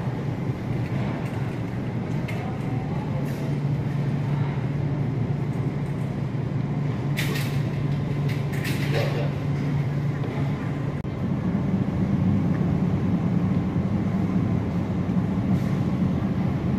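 Steady low hum of store refrigeration equipment, getting louder about eleven seconds in, with faint voices in the background.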